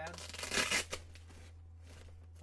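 Rustling and rubbing of a CCM Extreme Flex III goalie leg pad and its straps as it is gripped and turned over by hand, one burst of handling noise about a second long that is loudest just past the half-second mark. A low steady hum runs underneath.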